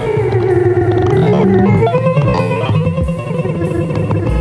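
Cello bowed with the Fello, a sensor-extended bow that drives live electronic processing. Sustained bowed tones glide and shift in pitch over a low bass layer and a regular rhythmic pulse.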